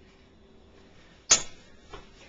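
A single sudden, sharp noise a little over a second in that fades within a fraction of a second, with a faint tap just before the end, against quiet room tone.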